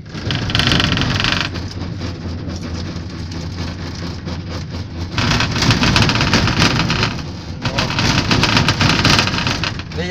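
Aerial cable-car cabin in motion, a steady rumbling and rattling noise from the cabin and its cable run, louder briefly about half a second in and again from about five seconds in until near the end.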